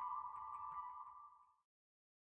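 Closing jingle ending on a held, ringing tone with light ticks over it, fading out about one and a half seconds in.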